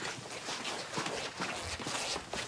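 Quick footsteps of two men hurrying off together, a fast run of short steps.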